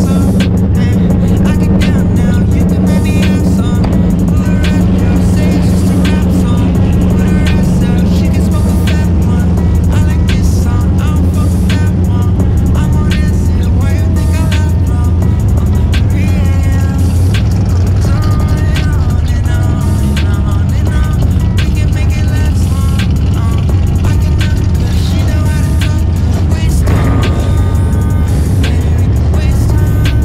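Car engine running steadily at low revs, a deep even drone, with music playing over it.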